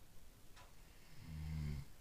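A soft scrubber rubbing over a varnished wooden door panel, heard as a faint swish about half a second in. About a second later a short low hum, the loudest sound here, lasts under a second.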